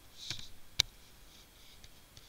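A single sharp click from computer use, a mouse button or key, a little under a second in, with a softer rustle just before it.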